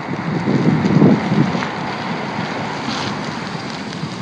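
Wind buffeting a phone's microphone outdoors: a steady rushing noise with heavier low gusts around a second in.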